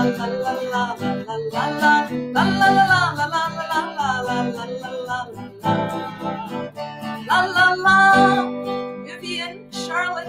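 A woman singing a children's song while strumming an acoustic guitar. Her voice drops away near the end, leaving the guitar.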